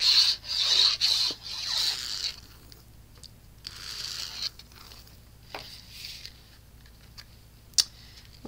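Cardstock being handled on a craft mat: paper rubbing and scraping in short bursts, loudest in the first two seconds and fainter later, with a sharp click near the end.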